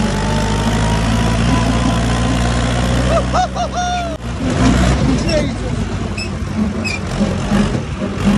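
Massey Ferguson 290 tractor's four-cylinder diesel engine running steadily under load while driving a PTO grass topper through grass, with a faint rising whine in the first second or so. About four seconds in, the steady engine note breaks off and becomes rougher and more uneven.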